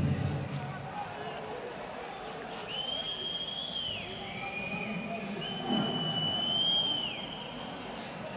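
Long, shrill whistles at a football match, just after a goal: three or four steady high notes, each one to one and a half seconds and dipping in pitch at its end, over a faint murmur of voices.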